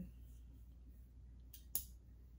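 Coach Kissing C hinged metal bangle snapping shut around a wrist: two sharp clicks close together near the end, the second louder, as the push-button clasp catches.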